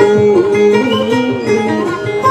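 Dayunday folk music: an acoustic guitar plucked steadily under a held melody line that glides smoothly in pitch.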